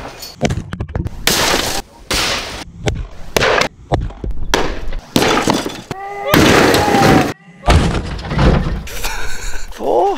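A run of loud crashes and smashing impacts from a heavy Thor's hammer hitting one target after another, with breaking and shattering noise, cutting abruptly from one hit to the next. Shouts and laughter are mixed in.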